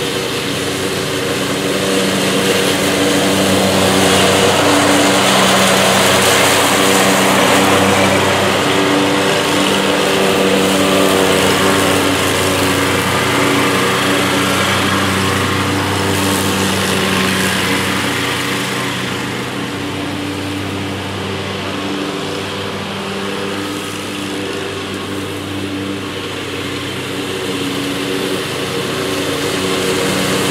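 Scag Cheetah zero-turn riding mower running steadily and cutting semi-tall bahia grass: a constant engine note with the whir of the blades. It grows louder and softer as the mower moves nearer and farther, loudest a few seconds in and rising again near the end.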